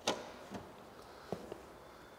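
The red rotary main switch on an m-tec duo-mix connect's control panel is turned on with one sharp click. A few fainter clicks follow, about half a second in and again just past a second.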